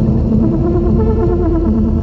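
Electronic dance music in a muffled, filtered passage: steady low synth notes over bass, with the high end cut away.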